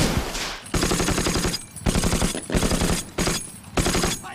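Browning M1919 .30 calibre machine gun firing four short bursts in a rapid rattle, each burst half a second to a second long, with a single loud shot right at the start.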